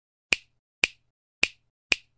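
Intro sound effect: four sharp, snap-like clicks about half a second apart, keeping time with the animated title lettering as it appears.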